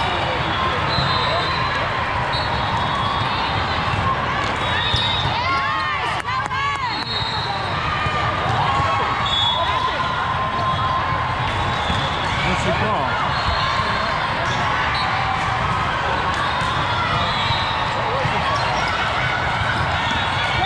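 Busy indoor volleyball hall: many voices chattering and calling at once, with volleyballs being struck and bouncing on the courts. A burst of sneaker squeaks on the court floor about six seconds in.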